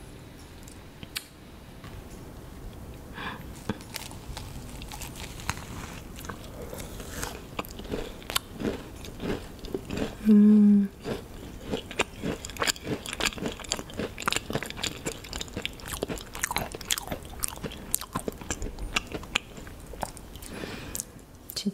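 Close-miked biting and chewing of a vanilla-cream macaron, the shell crackling in many small clicks. About ten seconds in, a short, loud hum of the voice.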